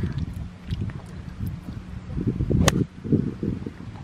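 A golf club striking a practice ball once on a driving range: a single sharp crack about two-thirds of the way in. Wind rumbles on the microphone throughout.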